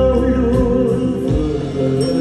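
Live band music with a male singer: vocals over guitars, bass and drums.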